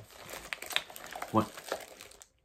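Makeup products being rummaged through by hand: scattered small clicks and rustling as the pieces are picked up and moved around.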